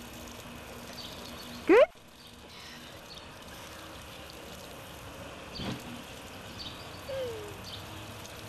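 Garden hose spray hissing steadily as the water arcs out over the lawn. About two seconds in, a short, loud rising squeal cuts through.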